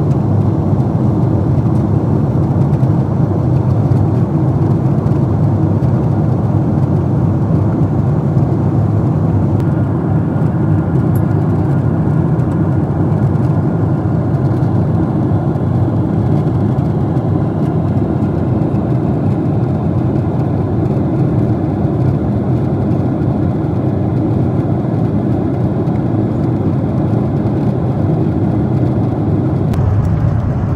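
Steady cabin noise of a Lufthansa Boeing 747-8 in flight, heard inside the economy cabin: the low, even rush of airflow and its GE GEnx-2B turbofan engines, with no change through the whole stretch.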